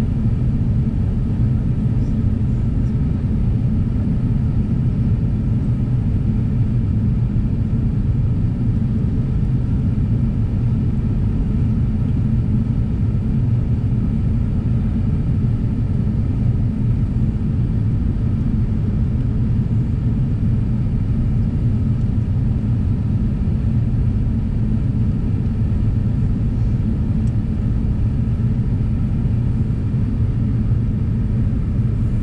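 Steady low rumble inside the cabin of an Airbus A350-900, its Rolls-Royce Trent XWB engines running, with no change in level throughout.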